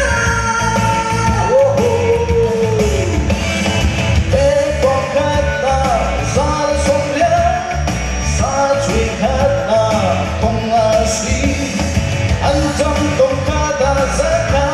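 A man singing a song into a microphone over amplified backing music with a steady beat.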